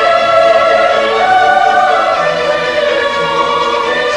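Opera performance: singing voices holding long, slowly changing notes over an orchestra.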